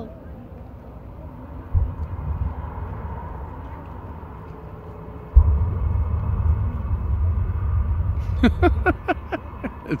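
Distant airshow pyrotechnics and jet truck: a low rumble with a thump about two seconds in, then a deep boom about five seconds in as a fireball goes up, followed by a heavy, sustained low rumble. A person laughs near the end.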